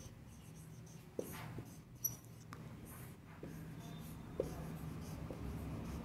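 Marker writing on a whiteboard: faint scratching strokes of the felt tip, with a few short, sharper marks as letters are drawn.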